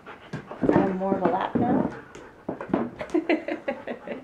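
A young child's voice: wordless vocal sounds, then breathy laughter in short quick bursts near the end.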